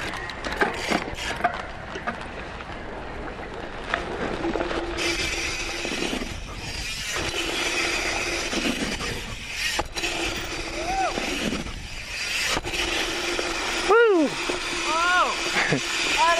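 A dirt jump bike rolling over a packed-dirt jump line: tyres on dirt and wind rush, with a steady hum that breaks off a few times. Near the end there are short voice sounds.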